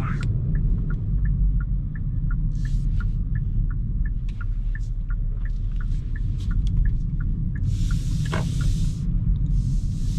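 Turn-signal indicator ticking steadily, about three ticks a second, inside the cabin of a Hyundai Kona Hybrid making a slow left turn, over low road rumble. A few short hissing rustles come around three seconds in and again near the end.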